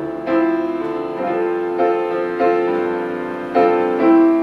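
Grand piano played live: about five chords struck in turn, each ringing on and fading before the next.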